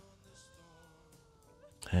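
The film's soundtrack, faint beneath the commentary: a single held note that sinks slightly in pitch and lasts a little over a second.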